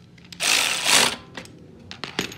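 Ratchet running in a fast burst of clicks for under a second, tightening the bolt on a mini bike's rear disc-brake caliper, then a single metal click.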